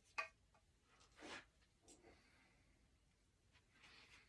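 Near silence with faint handling noise from two swords being moved: a short, sharp click with a brief ring about a quarter-second in, then a soft swish about a second later.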